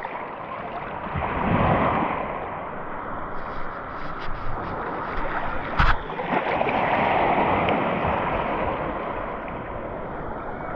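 Shallow sea water sloshing and lapping right at the microphone, swelling twice, with a single sharp knock a little past the middle.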